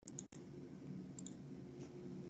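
Computer mouse clicking, a few faint short clicks near the start and about a second in, over the low hum of an open microphone.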